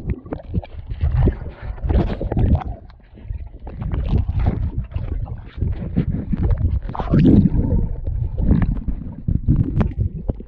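Muffled underwater sound picked up by a GoPro held under the surface of a swimming pool: water churning and gurgling in an irregular low rumble, with uneven surges as swimmers move nearby.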